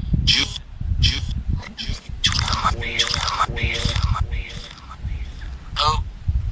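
Necrophonic spirit-box app on a phone's speaker, playing short chopped fragments of voices and static over a low rumble. It is being used as a ghost box: snippets are heard as the word "Jill" near the start and "go" at the end.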